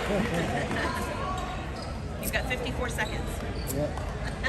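A volleyball bounced on the hardwood gym floor several times in the second half, as a server does before serving, over echoing voices in the gym.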